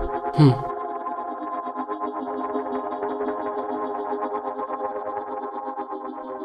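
Background film music: a sustained chord of several steady tones held through, with a faint even pulse and an echoing, effects-laden sound.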